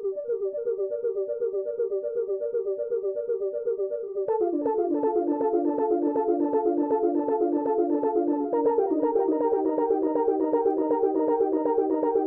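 MOK MiniRazze software synthesizer playing its "Cosmos" preset: a fast, evenly repeating pattern of synth notes. At about four seconds in it gets fuller and louder as lower notes join, and the pattern shifts again a few seconds later.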